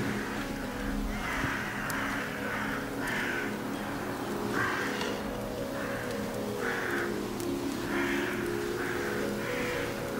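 Film soundtrack: low held musical tones that shift in pitch now and then, with short harsh calls repeating irregularly, roughly once a second, above them.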